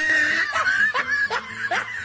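Laughter sound effect added in the edit: a snickering laugh in short, quick pulses that starts abruptly.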